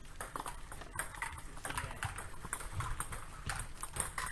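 Table tennis rally: a ping-pong ball clicking off bats and the table, in quick, irregular clicks, some overlapping.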